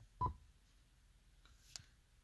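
A short electronic beep from an Android car radio's touchscreen as a finger taps the on-screen quit button, with a soft thump of the tap beneath it. A faint click follows near the end.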